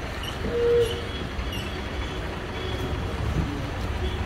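Bus-stand ambience: a steady low rumble of idling bus engines, with a short steady tone about half a second in.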